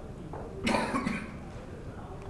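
A single short cough about two-thirds of a second in, amid quiet room tone.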